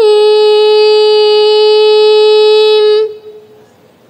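A high voice chanting one long, steady held note that stops about three seconds in, leaving only faint background sound.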